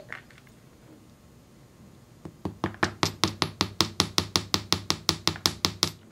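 Metal hammer striking sterling silver wire on a steel bench block. A couple of seconds in, it starts a quick, even run of light, ringing taps, about six a second, to flatten, harden and texture the clasp.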